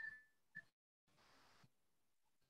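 Near silence on a video-meeting line, with two faint, brief blips in the first second.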